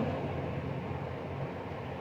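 Steady low hum with an even hiss: background room noise from a running machine.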